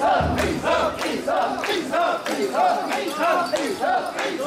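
Crowd of mikoshi bearers shouting a rhythmic unison chant as they carry the shrine palanquin, the call repeating in a fast, steady beat.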